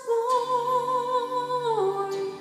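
A woman's solo voice holds one long note with vibrato, stepping down in pitch near the end, over a soft steady instrumental backing.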